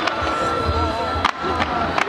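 Fireworks going off: two sharp bangs about a second and a half apart over repeated low booms, mixed with voices and music.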